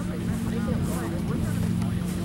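Faint, distant shouts of players and spectators on a soccer field over a steady low mechanical hum.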